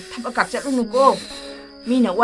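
A voice speaking in short phrases over steady background music.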